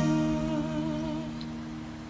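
A male voice holding the song's last sung 'ooh' with vibrato, ending just past a second in, over a final acoustic guitar chord that keeps ringing and fades away.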